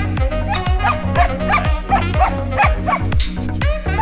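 Background music with a steady beat, over which a long-coat German shepherd barks in a quick run of short yips, about three a second, from about half a second in until about three seconds in.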